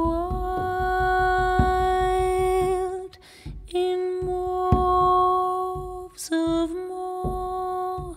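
A woman singing long held notes without words in a slow song: one long note, a short break about three seconds in, another long held note, then shorter notes sliding in pitch near the end.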